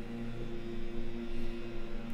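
Leaf blower running steadily, an even drone with a couple of held tones over a faint hiss.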